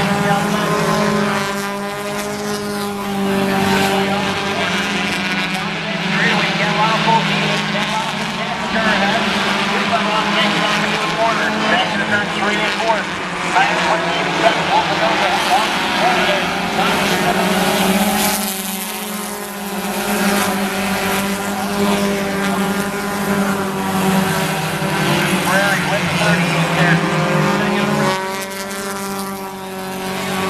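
Four-cylinder stock cars running laps around a short oval track. Their engine notes rise and fall in pitch and loudness as the pack comes past and moves away, over a steady continuous drone.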